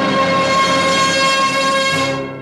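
An Arabic orchestra holding the song's final chord: one long, steady, full chord sustained without change.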